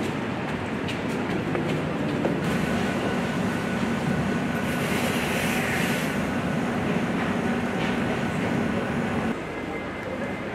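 A steady low mechanical rumble with a few faint clicks. About nine seconds in it drops abruptly to a quieter background.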